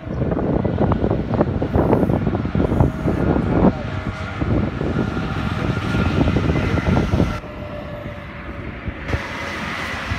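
Highway traffic noise from a coach driving along a toll road: a steady engine and tyre rumble with a faint steady tone over it. The level drops a little after about seven seconds.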